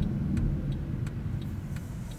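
A car's turn-signal indicator clicking steadily, about three clicks a second, as the car signals a left turn. Low engine and road rumble sounds underneath inside the cabin.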